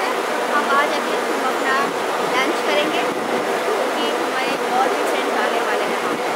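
A woman talking over the steady noise of city traffic and buses.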